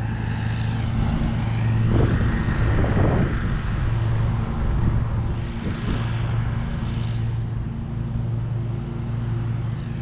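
Lawn mower engine running steadily at a distance, a constant low hum, with two brief swells of noise about two and three seconds in.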